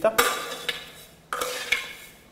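Steel scoop scraping through toasted caraway seeds in a pan, two strokes about a second apart, each with a short metallic ring that fades.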